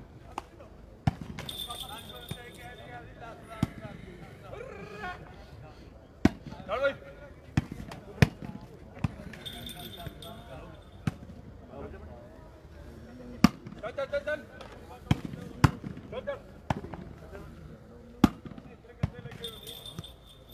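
A volleyball being struck by players' hands and arms during a rally: about a dozen sharp slaps at uneven intervals, with players' short shouts between the hits.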